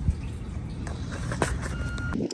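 AdBlue glugging from a plastic carton into a truck's AdBlue filler neck, over a low rumble, with a couple of clicks and a short beep near the end.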